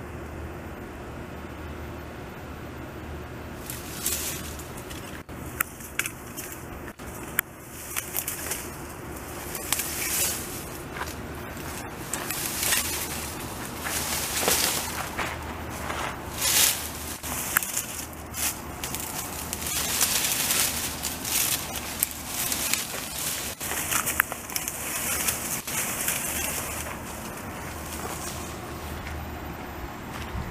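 A felled tree being dragged through brush by a beaver: leaves and twigs rustle and crackle in irregular bursts. The bursts come thickest from about four seconds in until near the end.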